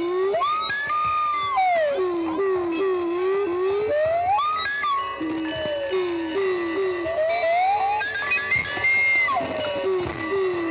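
Electronic noise music: a low tone warbling up and down in quick zigzags, broken three times by long sliding tones that swoop up, hold high and glide back down, like a theremin or siren.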